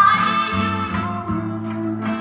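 Recorded music playing back from a Pioneer RT-1020H reel-to-reel tape deck through cabinet loudspeakers. It is an old, pre-1975 song with a held sung note and guitar.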